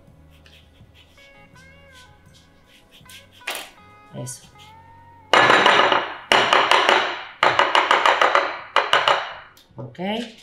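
Lemon peel being zested on a handheld fine rasp grater: four long, loud scraping passes in the second half, each a quick run of scratches.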